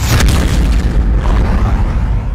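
Cinematic boom sound effect from a news intro sting: a sudden whooshing hit at the start, then a sustained deep bass rumble.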